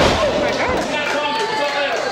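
A wrestler's body slammed down onto a wrestling ring's canvas: one sharp thud at the very start, with crowd voices shouting over it.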